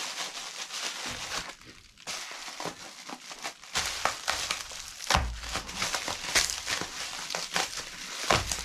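Plastic bubble wrap crinkling and rustling as it is handled and unwrapped from a package, with a short pause about two seconds in.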